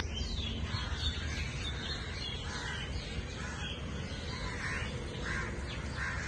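Crows cawing again and again, over a steady hiss and low rumble.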